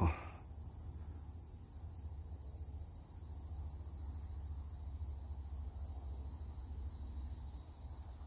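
Insects chirring in a steady high-pitched chorus, with a faint low rumble underneath.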